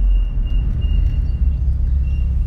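Mitsubishi Lancer Evolution VIII's turbocharged four-cylinder engine and road noise heard from inside the cabin while driving: a steady low rumble that eases slightly at the start, with a faint thin high whine over it.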